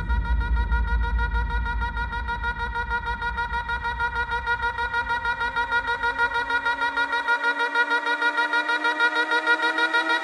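Electronic dance music breakdown: a held, rapidly pulsing synthesizer chord. The low bass fades out about seven seconds in, and from about halfway several tones slowly rise in pitch as a build-up.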